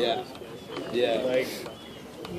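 A short lull in the announcing, filled by faint background voices.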